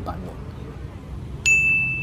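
A single bell-like 'ding' sound effect: one clear high tone with a few faint overtones, struck sharply about one and a half seconds in and ringing on steadily to the end. It marks the on-screen tally going up. A low street hum lies underneath.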